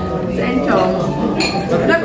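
Dishes, cutlery and glasses clinking at a dining table, with a few sharp clinks near the middle, while people talk over it.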